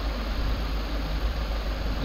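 Steady low hum with an even hiss underneath, unchanging throughout: the recording's background noise between phrases of narration.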